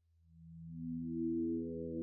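Synthesized electronic tone swelling in from silence about a quarter second in: a low hum first, then higher steady tones stacking on one by one so it grows louder and brighter, the opening of a TV ident jingle.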